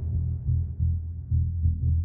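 Background music: a deep bass pulse about twice a second under a faint sustained chord that slowly fades.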